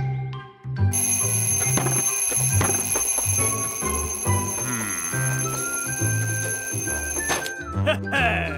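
Twin-bell alarm clock ringing with a fast, continuous rattle, cut off by a single sharp hit about seven seconds in, over upbeat cartoon music.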